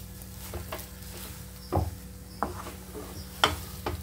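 Wooden spatula stirring and pressing a thick banana-semolina halwa mass in a nonstick frying pan, giving several soft knocks and scrapes against the pan. The strongest strokes come about two seconds in and again near the end. The mixture has cooked down into one thick lump that gathers together as it is turned.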